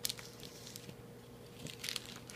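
Flemish giant rabbit nosing and biting into a plastic snack bag. The plastic crinkles in short crackly bursts right at the start and again near the end, with small crunching ticks between.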